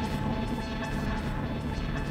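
Experimental electronic drone: a dense layer of many held synthesizer tones over a low rumble, run through an echo pedal, with swells in the highs that rise and fall.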